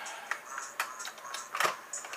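Scattered small clicks and light clatter of makeup cases being handled, with one louder knock a little past halfway, over faint background music.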